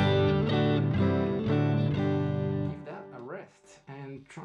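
Stratocaster-style electric guitar playing a short phrase of small spread chord shapes, a new chord struck about every half second with the notes ringing on. It stops about two and a half seconds in, and a man's voice follows.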